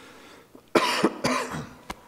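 A man coughing twice, about half a second apart, beginning under a second in, with a small click near the end.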